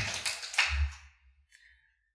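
Audience applause tailing off within the first second, with a low thump as it ends, then near silence.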